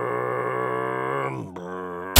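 A low voice holding one long drawn-out groan. It drops in pitch about one and a half seconds in and holds the lower note.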